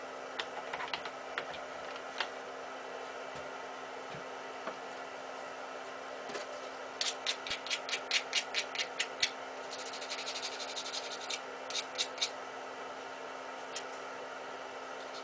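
Hand work with a small tool or part: a run of sharp clicks, about five or six a second, then a brief denser rattle of faster clicks, then a few last clicks. A faint steady hum sits underneath.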